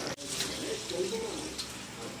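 A pigeon cooing in the background: one low, wavering coo from about half a second in, over faint room hiss.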